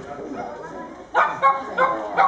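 A dog barking repeatedly, three sharp barks about a third of a second apart, starting just after a second in, over the murmur of people talking.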